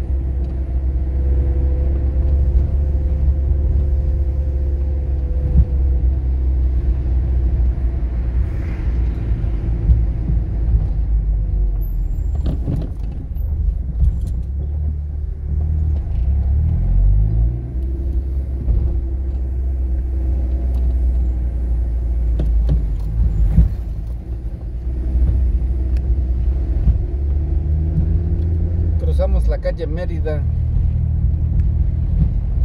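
A car's engine and tyre noise heard from inside the cabin while driving, a steady low rumble. About sixteen seconds in an engine note rises in pitch as it speeds up, and a few sharp knocks sound along the way.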